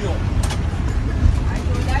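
Steady low rumble of a bus running, heard from inside the passenger cabin, with a brief knock about half a second in.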